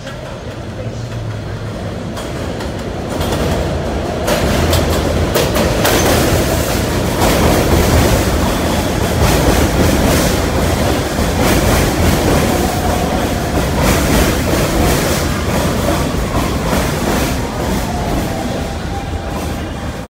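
New York City subway F train of R160 cars pulling into an elevated station and rolling along the platform. It grows louder about three to four seconds in, and the wheels make repeated clacks over the rail joints as the cars pass close by.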